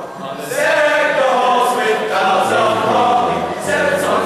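Male choir singing together, the voices coming in fully about half a second in after a brief breath.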